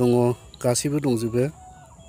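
A man's voice calling out loudly in drawn-out, sing-song syllables, twice, falling away about one and a half seconds in.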